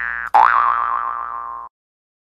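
Cartoon 'boing' sound effect on an intro title card, heard twice in quick succession. Each one is a springy upward swoop in pitch; the second wobbles as it fades and cuts off suddenly near the end.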